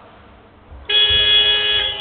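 Basketball arena buzzer sounding abruptly about a second in, one loud steady electronic tone held for about a second and then fading in the hall.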